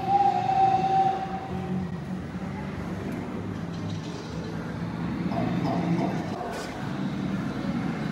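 A steady whistle-like tone holds for about the first two seconds, then fades. It sits over continuous background ambience with a low hum.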